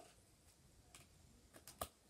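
Hand-kneaded slime being mixed in a plastic bowl: mostly near silence, with a few soft sticky clicks, the sharpest near the end.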